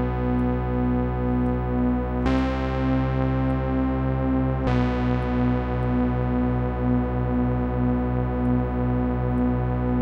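Stacked-sawtooth lead from a Reason Thor synthesizer, three sawtooth oscillators an octave apart holding long notes. The oscillators are being detuned, so the tone beats and pulses. The note changes about two seconds in and again near five seconds.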